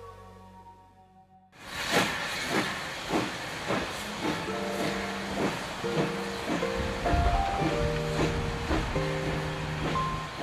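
Steam locomotive pulling away, its exhaust chuffing about twice a second over a steady hiss of steam, starting suddenly about a second and a half in after the fading tail of a falling intro jingle. Background music with held notes comes in over it about four seconds in.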